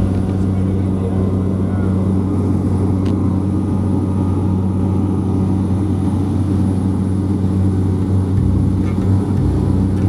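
A small propeller plane's engine running steadily, heard from inside the cabin as a low, even hum.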